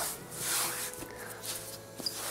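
Hands kneading and folding soft bread dough on a floured wooden board: soft rubbing and shuffling, swelling once about half a second in.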